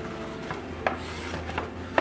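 Paper gift bag and its wrapping rustling as a hand rummages inside, with a few small sharp clicks.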